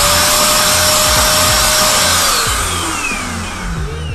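Electric paint sprayer running on a low setting, spraying activator onto hydro-dip film: a steady motor whine over the hiss of the spray. About two seconds in it is switched off and the whine falls away as the motor spins down.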